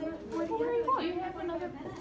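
Indistinct chatter of several people talking in a classroom, no single voice standing out.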